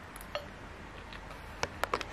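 A person chewing a mouthful of food taken from a metal fork, with a few short quiet clicks, one about a third of a second in and several close together near the end.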